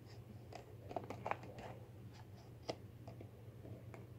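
Faint scraping and a few light clicks of a metal ice cream scoop being worked down into a plastic tub of ice cream.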